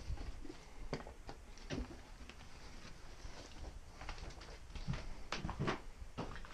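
Scattered knocks, creaks and rustles of people moving about on an old wooden floor littered with debris. The sharpest knocks come in a cluster a little after the five-second mark.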